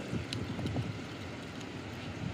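Wind buffeting a phone microphone outdoors: an uneven low rumble under a steady hiss, with a few faint ticks.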